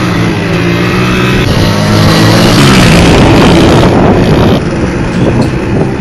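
Motorcycle engine running steadily at speed, its pitch holding level, with wind rushing over the microphone, loudest about two to four seconds in.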